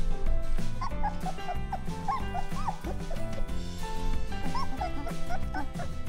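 Three-week-old Weimaraner puppies squeaking and whimpering in many short, high, rising-and-falling yips, over background music.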